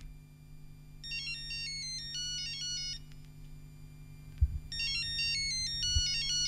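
Mobile phone ringtone melody of quick stepping high beeps, played twice in phrases about two seconds long, as the sampled intro of a grime track. A steady low hum runs under it, and a single low thump comes about four and a half seconds in.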